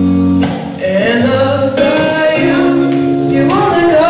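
A male voice singing a song into a microphone, the melody held and wavering, over an accompaniment of sustained chords that change every second or two.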